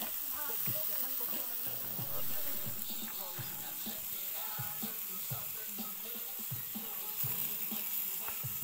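Chicken skewers sizzling on a grill grate over a campfire coal bed, a steady hiss, with faint voices and music in the background.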